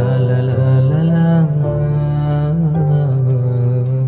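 Song: a voice singing a wordless 'la la' melody in long held, gliding notes over a sustained instrumental backing.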